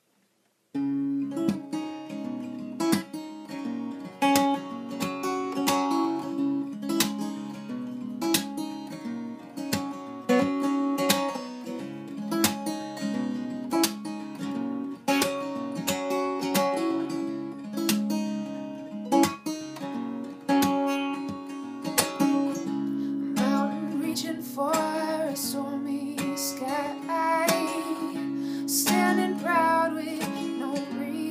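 Steel-string acoustic guitar starting about a second in and playing a picked chord pattern, the opening of an original song. Near the end a woman's voice begins to sing over it.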